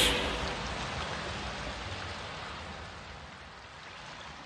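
A steady, even hiss without any tune, fading slowly away as the track ends.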